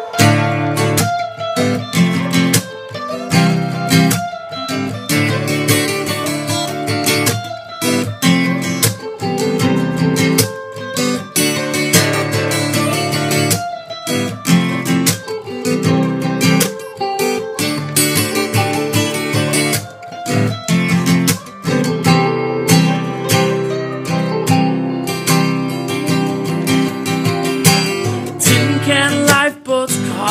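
Instrumental guitar intro: an acoustic guitar strummed in a steady rhythm together with an electric guitar, with a brief break just before the end.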